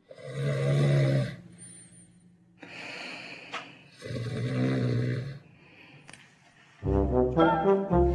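A person snoring loudly: two long rasping snores about four seconds apart with a softer breath between them. Brass music starts near the end.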